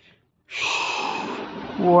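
A man's loud, breathy gasp of amazement about half a second in, running into a laugh and an exclaimed 'wow' near the end.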